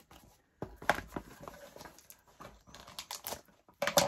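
Hands handling a small paper-and-cloth-taped craft book on a wooden table: scattered small clicks and crackles of paper and tape, in two clusters about a second in and again about three seconds in.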